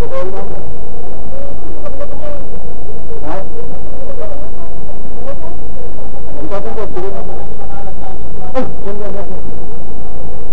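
A parked bus's idling engine rumbling steadily under indistinct chatter of passengers, recorded loud and distorted, with a few sharp knocks scattered through.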